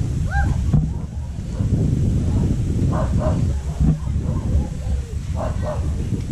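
Strong wind buffeting the microphone, a heavy low rumble throughout, with a few short distant calls over it.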